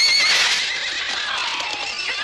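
Horses whinnying: a high, wavering neigh at the start, then shorter calls falling in pitch.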